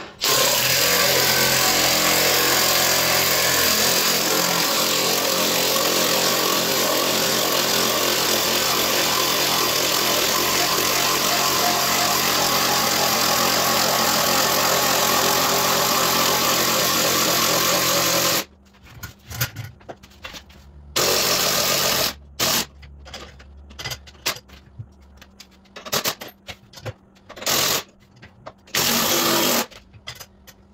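Cordless drill spinning the screw of a scissor jack to lift a heavy touring motorcycle. It runs steadily under load for about eighteen seconds, stops, then runs again in several short bursts.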